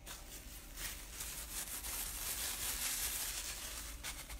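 Hand rubbing and brushing across watercolour paper close to the microphone: a steady scuffing hiss that builds after about a second and is strongest in the second half.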